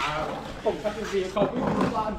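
People talking in Thai, in short bursts of speech.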